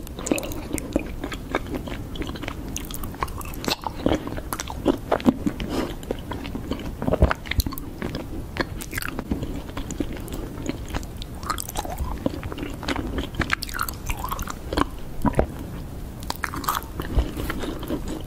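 Close-miked mouth sounds of someone biting and chewing raw honeycomb, with many irregular clicks.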